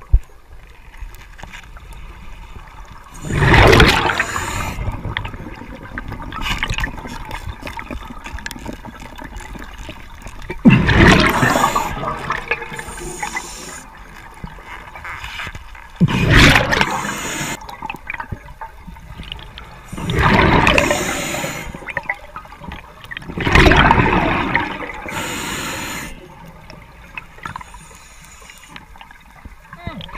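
Scuba diver breathing through a regulator underwater: five loud bursts of exhaled air bubbling out, one every four to seven seconds, with quieter sounds between them.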